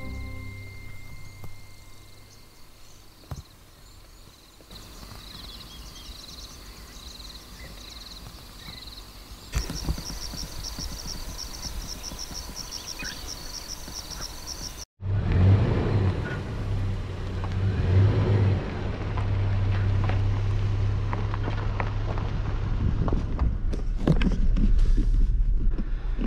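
Quiet outdoor ambience with faint high-pitched pulsing calls, first about two a second, then about five a second. About fifteen seconds in it cuts abruptly to the inside of a vehicle's cabin, where the engine runs with a steady low hum and a few knocks and clicks near the end.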